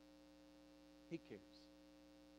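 Near silence with a faint, steady electrical hum in the audio.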